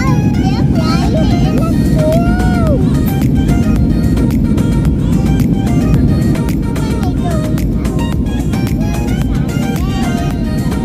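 Steady low roar of an airliner's cabin noise in flight, with background music playing over it. A voice rising and falling in pitch is heard in the first three seconds.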